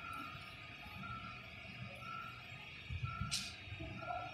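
Quiet room tone with a faint high beep repeating about once a second, and a short hiss about three seconds in.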